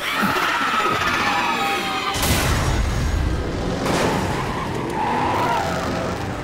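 Cartoon car-chase sound effects: tyres squealing, then a heavy crash about two seconds in and another hit near four seconds, with a second squeal near the end.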